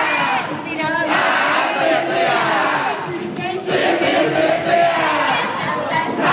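Crowd of idol fans shouting calls together, loud and continuous, with brief breaks about a second in and past the middle.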